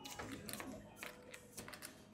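Playing cards being dealt onto a felt blackjack table: a string of faint, irregular clicks and taps as cards are pulled from the shoe and set down.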